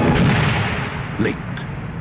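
A single loud shotgun blast about the start, its echo dying away over about a second.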